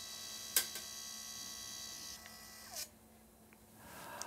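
HP Sprocket pocket photo printer's feed motor whirring steadily, with two light clicks about half a second in. Near three seconds it winds down in a short falling tone and stops.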